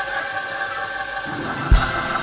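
Church band music: sustained chords, with a single drum hit near the end.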